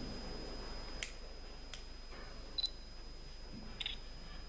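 A quiet, echoing room with four short, sharp clicks spaced about a second apart, over a faint steady high-pitched whine.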